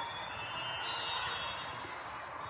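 Steady background din of a large, echoing exhibition hall with several indoor volleyball matches going on at once.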